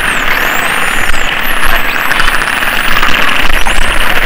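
Underwater sound of a spinner dolphin megapod: many whistles gliding up and down in pitch, overlapping one another, with rapid click trains in the second half, over a dense steady noise.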